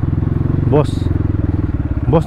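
Dirt bike engine running steadily at low revs while the bike creeps along a muddy track, a regular even throb. A brief human voice sound cuts in just under a second in.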